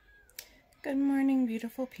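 A woman's voice coming in about a second in with one long, drawn-out word held on a single pitch, then breaking into shorter spoken syllables.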